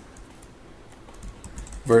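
Faint keyboard typing: a few quiet, scattered clicks. A man's voice starts near the end.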